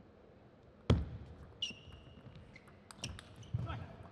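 Table tennis rally: sharp clicks of the celluloid-type ball off the bats and table, with a loud thump about a second in. A high shoe squeak on the court floor follows, then more quick ball strikes near the end.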